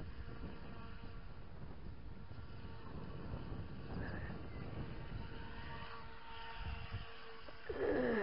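Radio-controlled model boat's motor running as it crosses a pond, a faint steady whine. Near the end it turns louder for about half a second, its pitch falling.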